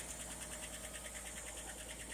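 Faint, steady idle of a 1960 Chevrolet Biscayne's inline-six engine, with a fast, even pulse. The engine is on its first warm-up after about 30 years laid up.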